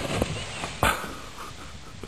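A plastic sled crashing and a rider tumbling into snow: scraping and spraying snow with a sharp thump a little under a second in, followed by a few short high-pitched cries.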